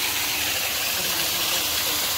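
Water from an artificial rock waterfall pouring down the rocks into a pond: a steady, even rush.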